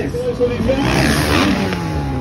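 Motocross dirt bike engine revving hard as the bike climbs the take-off ramp. The engine note falls away near the end as the bike leaves the ramp for a jump.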